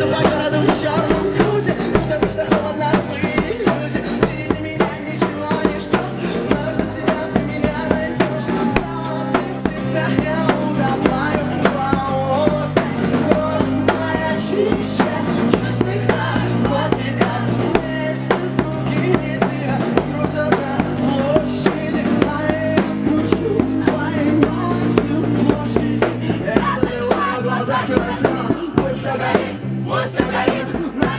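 Street rock band playing live through small amplifiers: a man singing over guitar and electric bass, with a wooden hand drum beaten by hand keeping a steady beat.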